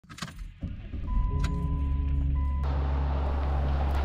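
Keys jingling in the ignition of a Jeep Liberty, then its engine starting about half a second in and settling into a steady idle. A steady tone sounds for about a second and a half before a hiss comes in.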